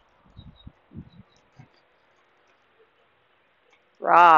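Several soft, low thuds in the first second and a half, then faint outdoor background.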